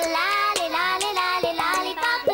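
A child singing a melody with musical backing, the opening song of a children's TV programme.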